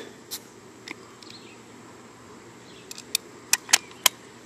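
Sharp plastic-and-metal clicks from a Colt Defender CO2 BB pistol being handled as its grip panel is fitted back over the CO2 cartridge. There are a few single clicks early, then a quick cluster of louder snaps in the last second.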